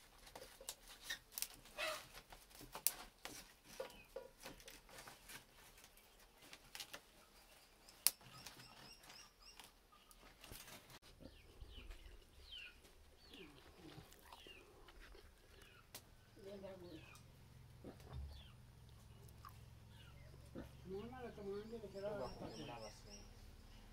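Faint sound around a small wood cooking fire: scattered sharp crackles and clicks through the first half, then birds chirping in the second half.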